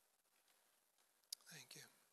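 Near silence, broken about a second and a half in by a sharp click and then a brief, soft murmured voice.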